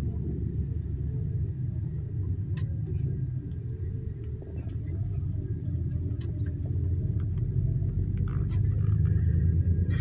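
Low, steady rumble of a tour bus driving, heard from inside the passenger cabin, growing a little louder in the second half, with a few faint clicks and rattles.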